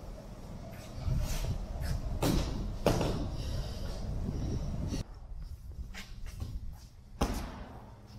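Dull thuds of a small child jumping and landing on soft foam plyo boxes and a floor mat: a pair of louder thumps about two and three seconds in, smaller knocks between, and one more thump about seven seconds in, over a steady low hum from a gym fan.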